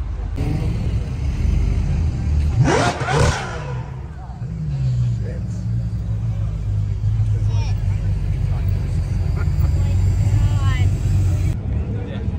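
A supercar engine, the McLaren 720S's twin-turbo V8, blips sharply once about three seconds in, drops back, then runs with a low steady rumble as the car rolls slowly past. Voices are heard around it.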